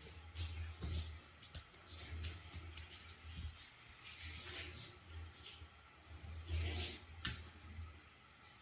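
Faint room sound with a low hum, and a few soft taps and scuffs: a kitten's paws patting a mirror and shuffling on a laminate floor as it spars with its reflection.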